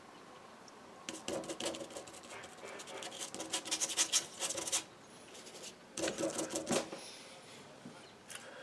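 Paintbrush scrubbing acrylic paint onto paper in quick, short, scratchy strokes, a run of them for nearly four seconds, then a shorter burst about six seconds in.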